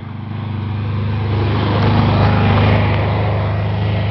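Volkswagen Kombi van labouring up a steep hill in first gear, its engine a steady low drone that grows louder as the van comes close, loudest a little past halfway, then eases slightly.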